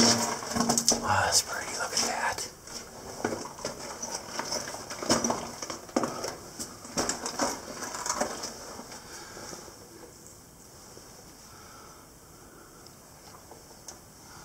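Irregular scuffs, knocks and rustles of a person moving over loose rock in a cave passage. The sounds thin out about eight seconds in, leaving a faint steady hiss.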